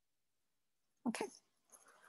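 Near silence, then a woman says "okay" once, briefly, about a second in.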